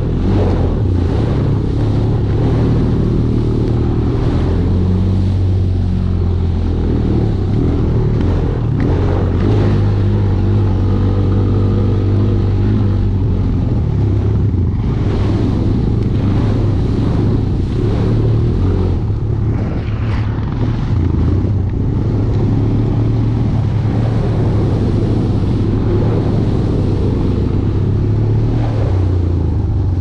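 Honda Recon ATV's single-cylinder four-stroke engine running steadily while riding a trail, its pitch rising and falling with the throttle.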